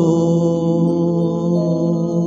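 A man's voice holding one long, steady low note, reached by a downward slide just before, over a soft sustained backing track.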